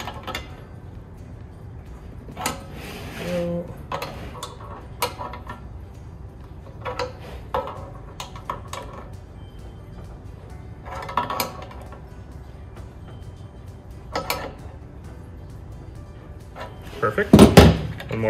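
Scattered metallic clinks and knocks as a wrench and hands work the fittings of a stainless steel mini keg while its lines are tightened. Near the end comes a loud, short burst, the keg's pressure relief valve being pulled to let gas out.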